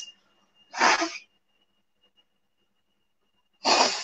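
Two short, sharp breathy bursts from a woman close to the microphone, one about a second in and one near the end, with near silence between.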